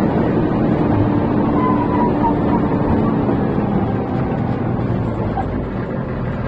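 A bus driving on a winding mountain road, heard from inside the cabin: a steady, loud engine drone and road rumble.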